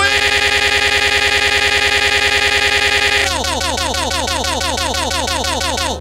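A man's shouted voice chopped into a rapid stutter loop: one short fragment repeats about ten times a second. About three seconds in, the loop switches to a fragment that falls in pitch on each repeat, about seven times a second.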